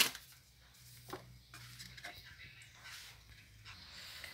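Faint, scattered light clicks and taps of dry lasagna sheets being laid over meat sauce in an aluminium baking tray.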